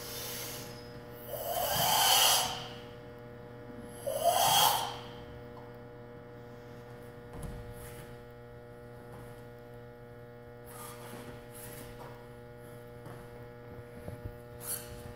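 Karate practitioner performing a form, with two forceful exhalations about two and four and a half seconds in, then faint rustles and foot taps over a steady electrical mains hum in the room.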